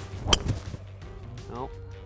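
Golf tee shot: a wood's clubhead strikes the teed ball, one sharp crack about a third of a second in.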